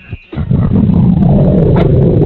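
A loud, low, rumbling sound effect played in a caller's crude prank bit, starting about half a second in and carrying on steadily.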